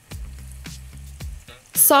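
Breaded chicken skewers sizzling in hot light olive oil in a skillet, the oil hot enough to fry. A few light clicks of metal tongs come through as the skewers are set in the pan.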